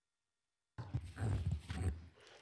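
A podium microphone cuts in suddenly after dead silence, about three-quarters of a second in, and then picks up a run of low thumps and rubbing from being handled or bumped as the presenter settles at it.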